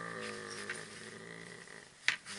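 A man's voice holding one long hesitant vowel, a drawn-out 'aaa' in the middle of a word, fading away over about two seconds. A couple of faint clicks come from handling the zipper pulls of a canvas shoulder bag.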